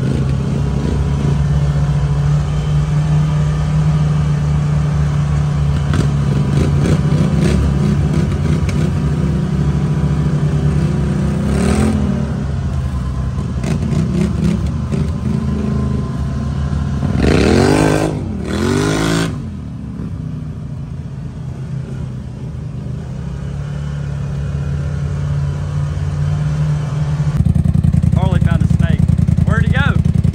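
Can-Am Maverick Sport side-by-side engine running while driving a muddy trail, with the revs rising and falling twice about two-thirds of the way in. Near the end the sound cuts to a louder, steady engine.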